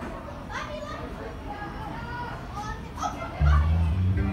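Children's voices and chatter in a big, echoing room during a break in the music. About three and a half seconds in, the animatronic stage show's music comes back in loudly with a heavy bass beat.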